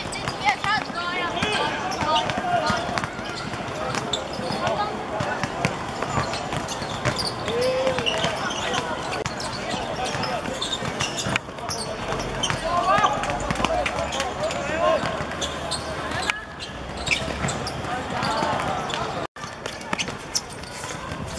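Players shouting to each other during a small-sided football game, with the ball being kicked and footsteps on the hard court, many short knocks among the voices. The sound drops out for an instant near the end.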